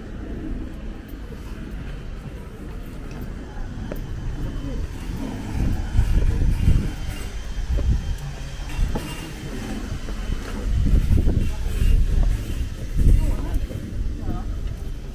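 Wind buffeting the microphone in irregular low rumbling gusts that grow stronger about halfway through, with indistinct voices of people close by.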